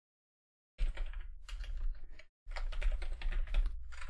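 Fast typing on a computer keyboard: two quick runs of keystrokes, the first starting under a second in and the second after a brief pause.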